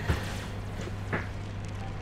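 Steady low room hum, with two faint brief sounds about a second apart.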